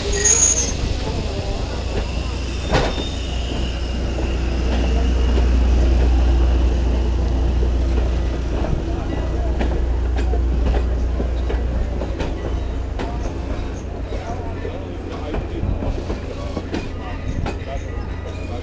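Strasburg Rail Road passenger train rolling on the rails, a steady low rumble that swells and fades in the middle. A brief high wheel squeal comes right at the start, and short clicks and clanks run through the second half.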